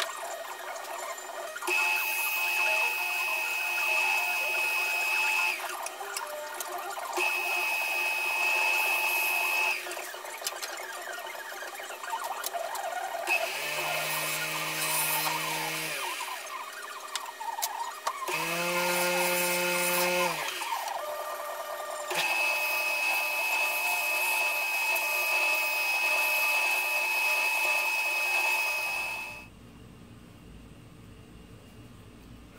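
Wood lathe running while a turning tool cuts into the spinning natural-edge log blank, in three long passes that bring a louder scraping sound with a thin steady high ring. Twice in the middle a lower droning tone comes and goes, and the sound drops away just before the end.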